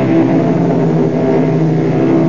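Instrumental closing music: sustained chords held steady, changing pitch between held notes.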